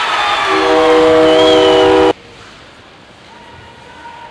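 An arena goal horn, a chord of steady tones, sounds over a cheering hockey crowd about half a second in. Both cut off suddenly about two seconds in, leaving faint arena noise.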